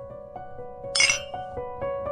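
Small drinking glasses clinking together once in a toast, about a second in, with a short bright ring. Soft background music with sustained notes plays throughout.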